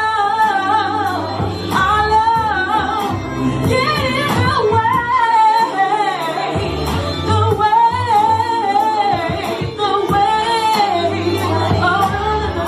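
A woman singing an R&B song live into a handheld microphone, holding long notes that bend and waver, over backing music with a low bass line.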